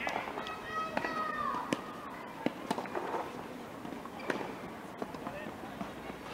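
Tennis balls being struck with rackets on a clay court: several sharp knocks at irregular intervals, strongest in the first three seconds and again a little after four seconds in, over people talking in the background.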